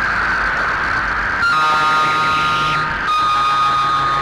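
Instrumental interlude of a film song: sustained electronic synthesizer tones with no singing. A single high held tone gives way about a second and a half in to a held chord, which changes to another chord about three seconds in.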